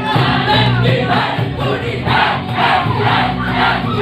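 A Hindi Christian worship song performed live by a small amplified band: acoustic and electric guitars with several voices singing together over a steady beat.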